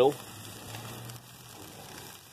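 Delmonico steaks sizzling on a charcoal grill, a steady soft hiss, with rain falling on the grill.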